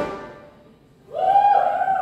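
A live rock band's final chord and cymbal crash ring out and die away over about half a second. About a second in, a single high held whoop rises and holds.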